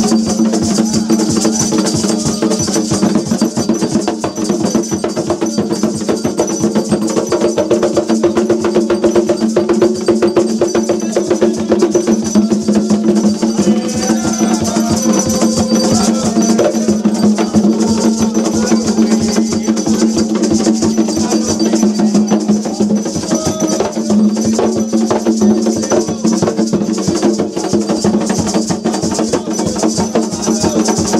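Ritual percussion music: a fast, unbroken stream of strokes from hand-held percussion, with drumming under it and a steady low drone.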